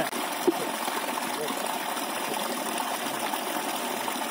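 Water gushing steadily from a pipe into a concrete irrigation tank, with a brief knock about half a second in.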